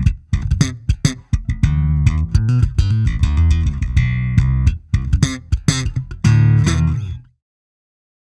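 Fender Jazz Bass played through an Eden Terra Nova bass amplifier: a busy run of short plucked notes, ending on a longer held note before the sound cuts off suddenly near the end.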